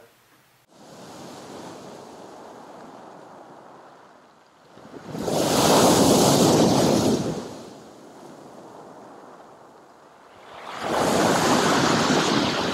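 Sea surf on a pebble shore: a low, steady wash with two loud wave crashes, about five seconds in and again near the end, the first one breaking against a concrete pier.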